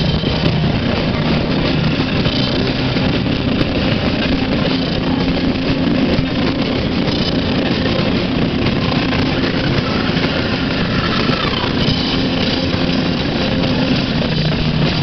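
Live rock band playing loud, distorted music: a dense, unbroken wall of guitar and drums with held low notes underneath.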